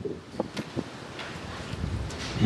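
A pause in a man's speech: low, steady background noise with a few faint soft ticks in the first second.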